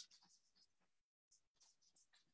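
Near silence: faint, scattered small clicks and rustles, with the audio cutting out completely for a moment just after a second in.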